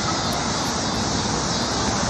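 A steady rushing noise with no pitch and no distinct events.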